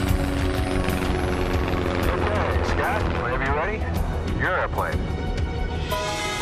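Film soundtrack: music over the steady low drone of a single-engine propeller plane in flight, with a voice whose pitch wavers and sweeps through the middle.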